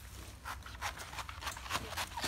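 Kitchen knife cutting into a banana plant's pseudostem, about five short crisp cuts and rustles of the moist, layered stem, whose core is rotted by bacterial heart rot.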